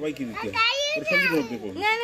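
Children talking in high-pitched voices, several short phrases one after another.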